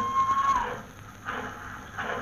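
Train whistle holding one steady note that cuts off with a slight drop in pitch about half a second in, followed by quieter train noise coming in a few regular surges.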